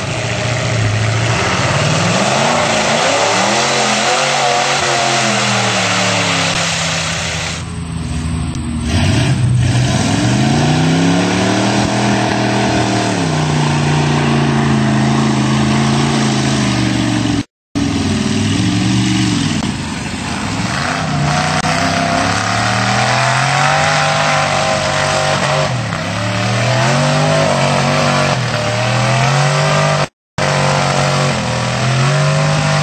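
Lifted four-wheel-drive trucks' engines revving hard through a mud pit, the pitch climbing, holding and dropping again and again as the throttle is worked. There is a brief moment of silence a little past halfway, then another truck's engine revs the same way.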